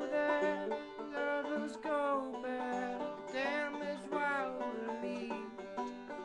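Banjo picked in a steady, repeating pattern as song accompaniment, with a voice sliding through a few wordless held notes over it.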